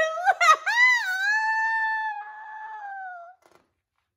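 A woman's voice acting out a long, theatrical wail, "Waaaahhh!", held for about two and a half seconds with its pitch sagging slightly toward the end. It is followed by a short laugh.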